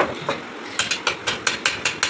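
Quick series of sharp metal-on-metal taps on a truck brake shoe clamped in a vise: a couple of taps at first, then a fast run of about five a second from about a second in.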